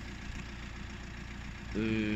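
Steady low rumble of a Mercedes-Benz car engine idling. Near the end a man's drawn-out hesitation hum begins.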